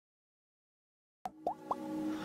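Silence, then just over a second in three quick plop sound effects, each a short upward-gliding blip about a quarter second apart, over the start of a sustained music pad: logo-intro sound design.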